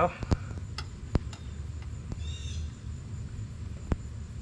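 Engine oil dipstick being drawn out of its tube and handled: a handful of light, sharp clicks and ticks, spread over the first second and a half with one more near the end, over a low steady hum.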